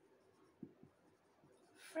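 Faint sound of a marker pen writing on a whiteboard, with two soft knocks a little after half a second in.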